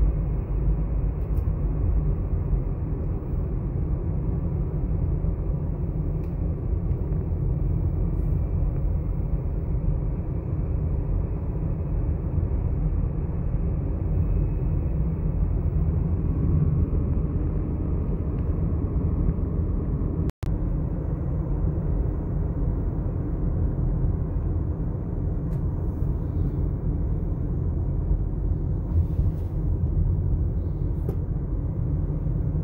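Steady road and engine rumble of a moving car, heard from inside the cabin, heaviest in the low end. It breaks off for a split second about two-thirds of the way through.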